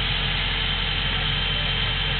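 An engine running steadily at idle: an even, unchanging drone with a thin high whine over it.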